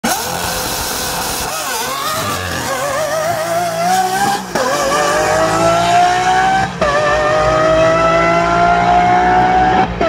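A high-performance car launching hard down a drag strip. Its engine note wavers for the first few seconds, then climbs steadily through the gears, dropping briefly at each upshift: about four and a half seconds in, just under seven seconds in, and again near the end.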